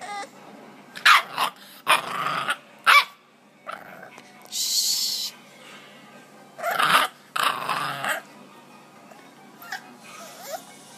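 English bulldog puppy barking in a string of short, separate bursts, demanding attention, with a brief hiss about halfway through.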